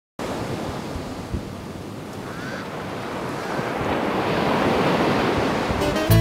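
Ocean surf washing onto a shore, a steady rush that swells louder toward the end.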